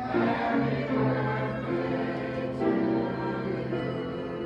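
A small church congregation singing together with organ accompaniment, moving through slow, long-held chords.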